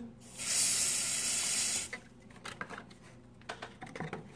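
Aerosol smoke-detector tester (canned smoke) hissing in one burst of about a second and a half, sprayed at a newly installed ceiling smoke detector to test it. A few faint clicks follow.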